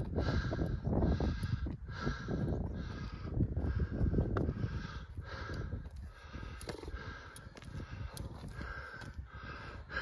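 A hiker breathing hard and rhythmically from the effort of a steep rocky climb, about one and a half breaths a second. Wind or handling rumble runs under it on the microphone.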